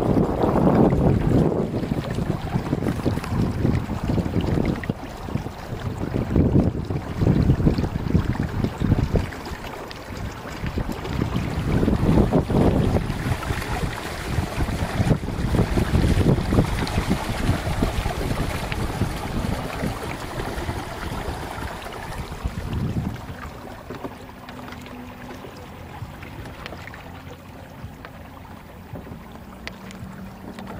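Wind buffeting the microphone and water rushing along the hulls of a sailing trimaran kayak under way. The noise comes in gusts and eases off about two-thirds of the way through.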